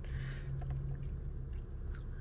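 Steady low hum and rumble inside a parked car's cabin.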